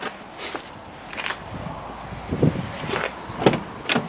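A BMW 3 Series driver's door being handled and opened, heard as a string of irregular short clicks and knocks, several with a low thud, the last near the end.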